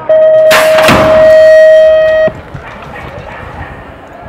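BMX start-gate electronic tone, one long steady beep lasting about two seconds and cutting off sharply. About half a second in, a loud rush of noise: the pneumatic start gate dropping to release the rider.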